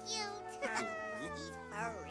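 A small creature's squeaky voice: a short, high, wavering squeak, then a long call that slides down in pitch, over soft background music.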